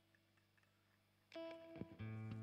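Near silence with a faint lingering note, then about a second and a half in an acoustic guitar is plucked loudly. A few more picked notes follow as the guitar starts playing.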